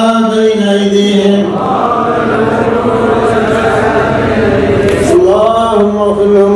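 Men's voices in Islamic devotional chanting: a held, melodic chant for the first second and a half, then many voices reciting at once without a clear tune for several seconds, and a single chanting voice rising back in near the end.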